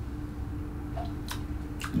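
A man sipping a drink from a glass and swallowing, with a couple of small sharp mouth clicks in the second half, over a steady low hum.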